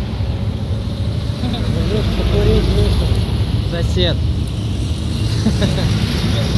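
Road traffic passing close by: cars driving past with a steady rumble of engines and tyres, growing louder about two seconds in.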